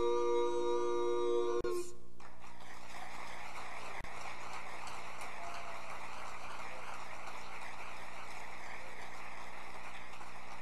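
A barbershop quartet's a cappella final chord, held steady and cut off about two seconds in, followed by steady audience applause.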